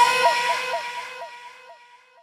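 Electronic pop music dropping out: the bass cuts off and a held synth note, with a short repeating blip about four times a second, fades away to near silence.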